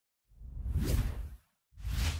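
Two whoosh sound effects for an animated logo intro: a longer swell that builds and fades over about a second, then a shorter one starting near the end.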